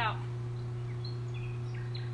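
Steady low background hum, with a few faint, short bird chirps over it.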